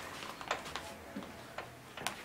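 A few light, irregular clicks and taps in a quiet room.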